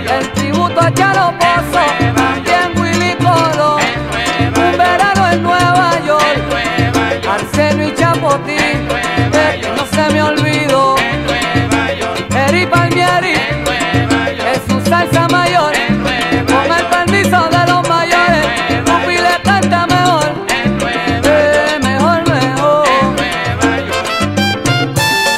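Salsa recording by a conjunto, playing steadily with a stepping bass line, a percussion pulse and melodic lines over it, and no sung words through this stretch.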